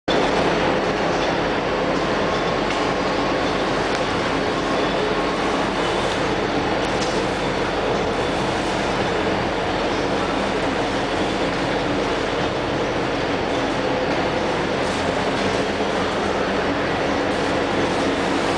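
Steady, loud mechanical running noise of workshop machinery, unbroken, with a faint low hum under it.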